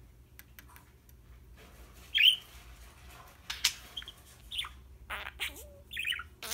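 Budgerigar giving short chirps. The loudest is a quick downward-sweeping chirp about two seconds in, and several more short chirps and clicks come in the last couple of seconds.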